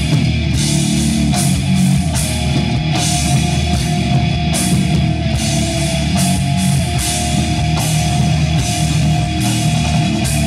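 Heavy metal band playing live: distorted electric guitars and bass over a drum kit, loud and steady, with regular drum and cymbal hits.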